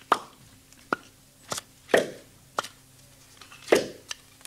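Radio-drama sound effect of a hand-cranked sausage machine being worked: about six irregular sharp knocks and clanks, three of them louder with a short ring, over a faint steady hum.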